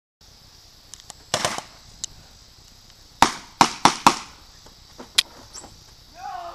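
A run of sharp knocks or bangs over a steady high hiss. There is one longer crash a little over a second in, then four quick sharp bangs in about a second, starting a little past three seconds in, and a single click a second later.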